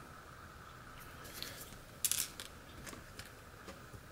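Faint handling noises of tiny lock parts: a few light clicks and scratchy rustles as a small pin and spring are handled and set down in a pin tray, the clearest cluster about two seconds in.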